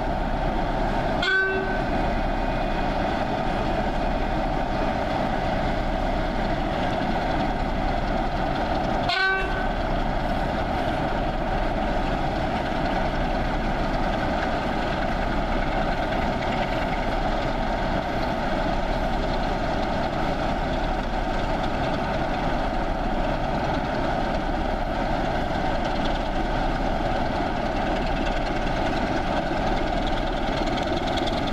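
Diesel locomotive engines running steadily at close range, a continuous rumble that holds level throughout. Two short horn toots sound, about a second in and about nine seconds in.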